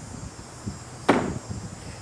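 Faint handling noises and one sharp click about halfway through as a cordless drill driver and screw are set against a garage door's seal and frame. No drill motor runs.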